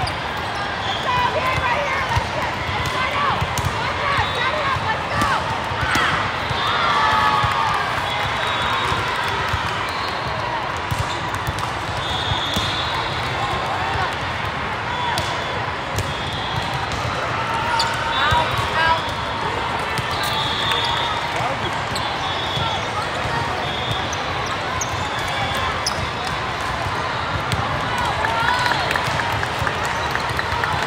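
Indoor volleyball played in a huge, echoing hall with many courts: balls are hit and bounce in sharp, scattered knocks over a steady hubbub of players' and spectators' voices.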